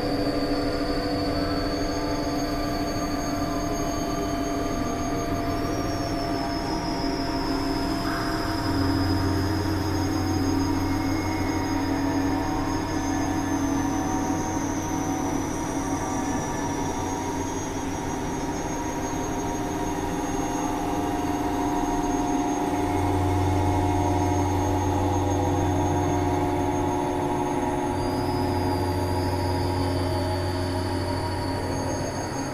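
Experimental synthesizer drone: layered held tones with thin, high whistling tones that slide slowly down in pitch, over a deep low hum that grows stronger partway through and again near the end.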